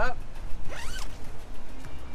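Zipper on a camper van's roll-up door screen being zipped up, one quick zip that rises in pitch a little under a second in.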